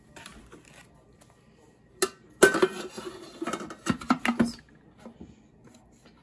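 Plastic lid being put on and closed onto a Thermomix TM6 mixing bowl. There is a sharp click about two seconds in, then a run of clicks and knocks lasting about two seconds.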